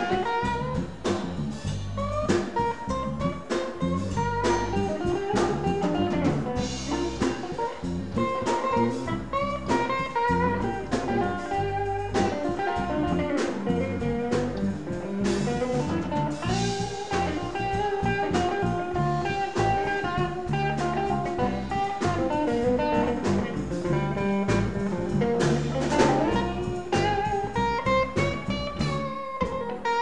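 Blues band playing an instrumental passage: a guitar takes the lead with notes that bend in pitch, over bass and a drum kit.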